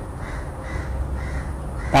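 A crow cawing in the background: about five harsh caws in quick, even succession, over a steady low hum.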